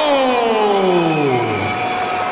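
A ring announcer's amplified voice drawing out the last syllable of the winning fighter's name in one long call that falls steadily in pitch.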